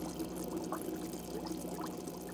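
Aquarium air-driven sponge filter bubbling: a patter of small air bubbles rising and breaking at the surface over a steady low hum.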